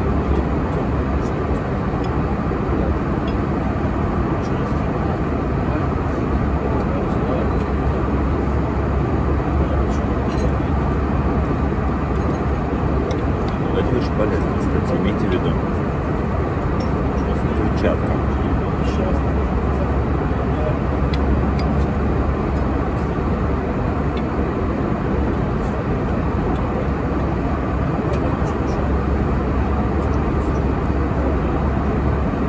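Steady low cabin noise of an airliner in flight, with faint light clinks of knife and fork on a plate now and then.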